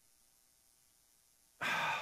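Near silence, then about a second and a half in a man's sudden, loud breath in, a short noisy rush of air.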